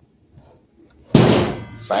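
A heavy metal clunk with a short ringing fade about a second in, as a Ridgid table saw's wheeled folding stand is released with the foot pedal and drops back down onto its feet.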